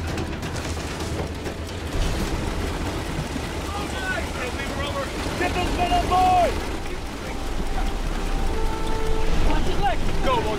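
A flying boat's engines running at a steady low rumble while it sits on the sea, with a wash of wind and spray noise over it. Indistinct shouting rises over the engines about four to six seconds in.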